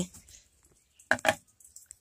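Glow-stick fingertips of a homemade glove tapping on a chair: two quick taps about a second in.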